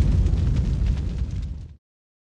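Low rumbling tail of a cinematic boom sound effect in a TV channel's logo outro, slowly fading, then cut off abruptly near the end.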